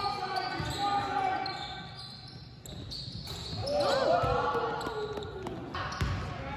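Basketball being dribbled on a hardwood gym floor, with sneakers squeaking in short gliding squeals about four seconds in and players' voices calling out in the hall.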